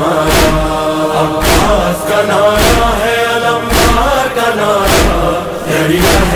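Male voices chanting a Shia noha (lament) in unison on long held notes, with a heavy beat of matam (rhythmic chest-beating) landing about once a second.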